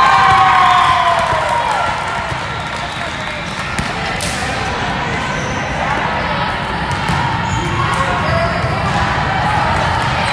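Busy volleyball gym ambience: overlapping chatter and shouts from players and spectators, with volleyballs being hit and bouncing on several courts, echoing in the large hall. A drawn-out shout at the start falls in pitch.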